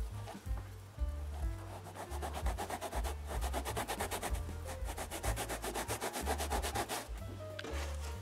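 Coarse sandpaper rubbed quickly back and forth over a foam seat base: a fast, even rasping of many short strokes that stops near the end. Background music with a bass line plays under it.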